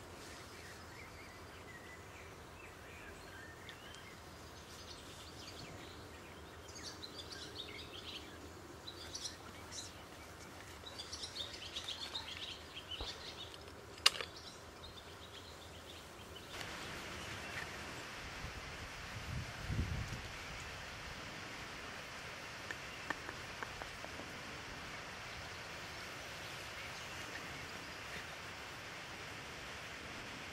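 Small birds chirping and singing in the background for several seconds, with one sharp click about halfway. After that a steady rushing hiss takes over, with a low thump and a few faint ticks.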